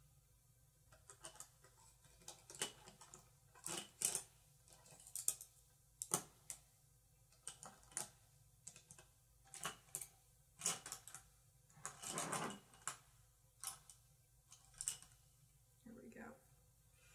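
Eyeshadow blending brush worked over the eyelid: a faint string of short, irregular scratchy strokes, with one longer stroke a little past the middle.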